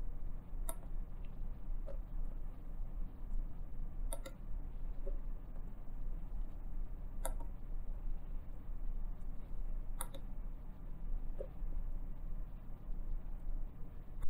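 Small plastic clicks of a breadboard DIP switch's toggles being flipped with a pick and of a pushbutton being pressed to step to the next address: four sharp clicks about three seconds apart, with fainter ticks between, over a low steady hum.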